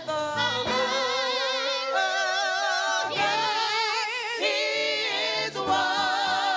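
A women's gospel praise team singing together into microphones, holding notes with a strong vibrato that changes pitch every second or so.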